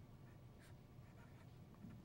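Faint scratching of a felt-tip marker writing on paper, in short strokes.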